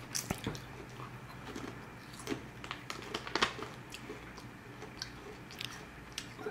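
A child chewing potato chips, with a few faint, sharp crunches.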